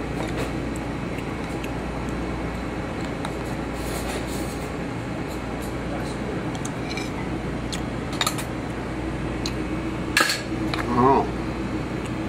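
A metal pie server cutting a pie and lifting a slice onto a ceramic plate, with a few sharp clinks of metal on the plate about 8 and 10 seconds in, over a steady kitchen hum.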